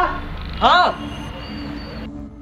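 Two short pitched vocal cries, each rising then falling, about three-quarters of a second apart, over a low steady background hum.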